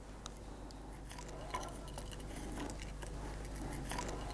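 Pocket knife scraping and shaving the outside of a pine-wood shepherd's flute to thin it: faint, irregular small scrapes and clicks that grow slightly louder as the paring gets going.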